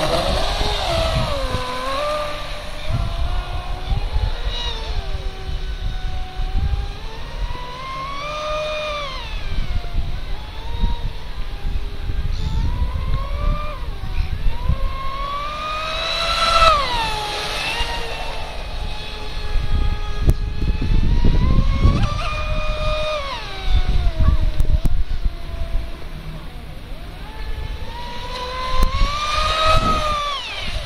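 Electric motor of a large RC speedboat run on a 6S battery, a high whine that rises and falls in pitch again and again as it speeds up and eases off across the water. Wind rumbles on the microphone underneath.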